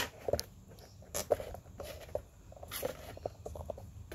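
Sharp click as the mains cord's plug is pulled from the socket on a TV's power board, then scattered light taps and rustles of handling.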